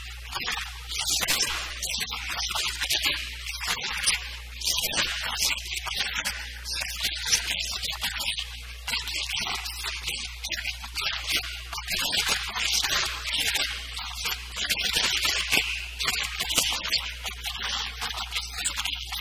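A man's voice lecturing in Urdu, heard as thin, hissy and choppy, over a steady low hum.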